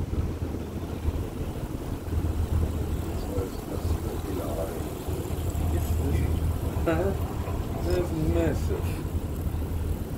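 Steady low rumble of a moving cable-car gondola riding along its cable, with quiet voices talking over it now and then.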